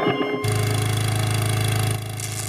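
Cartoon sound effect of an electric fan's motor switching on about half a second in and running with a steady, low buzz as it winds in a rope.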